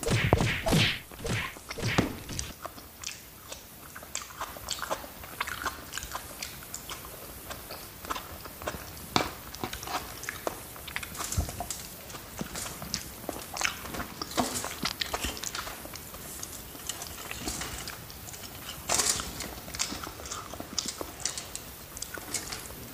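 Close-up eating sounds: a person chewing food, with many short clicks and smacks of the mouth. They are louder in the first couple of seconds and again a little before the end.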